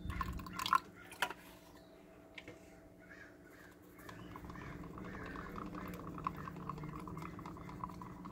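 A little water poured from a plastic bottle into a cup of paint and Floetrol, with a couple of light knocks. From about halfway, a wooden craft stick stirs the thick paint mix in a plastic cup, making faint quick scraping ticks.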